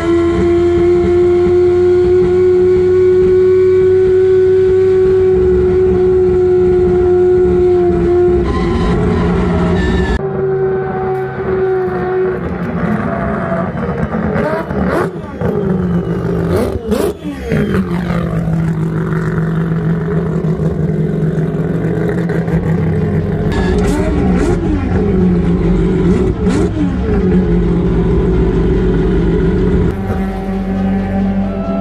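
Four-rotor turbocharged Mazda RX-7 rotary engine running hard, heard loud from inside the cockpit as a steady high engine note. About ten seconds in, it is heard from trackside as the car approaches and passes, with a sweeping change in pitch, then settles into a steady lower engine note.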